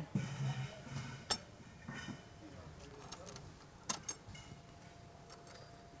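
Faint metallic rubbing and clicking as the threaded steel vertical rod of a panic exit device is turned by hand to line up its cotter-pin hole, with one sharp click about a second in and two quick clicks around the middle.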